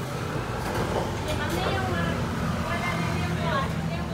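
Indistinct voices talking over a steady low engine hum from street traffic.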